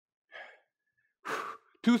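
A man breathing hard while doing push-ups: a faint breath about a third of a second in, then a louder exhale a little past the middle, just before he speaks.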